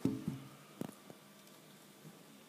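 A short wordless voice sound, then a sharp click and a couple of faint ticks of plastic LEGO pieces being handled on a model spaceship.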